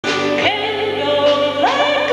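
A woman singing into a microphone with a live band. She holds wavering notes and rises into a new one about half a second in and again near the end, over steady accompanying tones.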